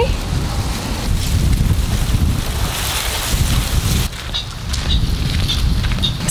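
Wind buffeting the microphone: a loud, gusting low rumble, with a rushing hiss above it that swells in the middle seconds.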